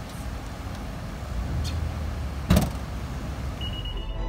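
An SUV's rear hatch shut with a single loud thud about two and a half seconds in, over a steady low outdoor rumble.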